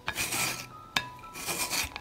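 Peeled winter melon rubbed across a metal shredding grater: two rasping strokes about a second apart, with a light click between them.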